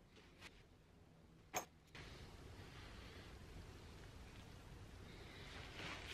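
Near silence: room tone, with a faint tick and then one short sharp click about a second and a half in, and a faint steady hiss from about two seconds on.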